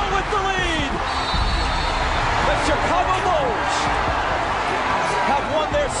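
Basketball game broadcast: loud, steady arena crowd noise with a ball bouncing on the court.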